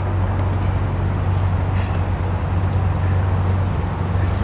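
Steady low rumble of outdoor background noise, with no clear single event standing out.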